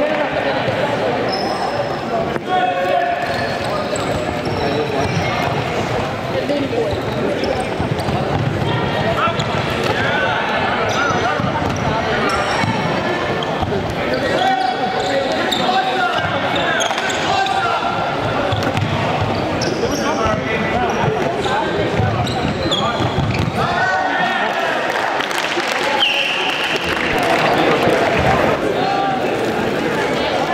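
Indoor ultimate frisbee play on a wooden sports-hall floor: players' shoes squeaking and thudding on the boards, with players calling out and spectators talking throughout.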